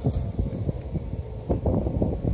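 Wind buffeting the microphone: an uneven low rumble that surges and drops in gusts.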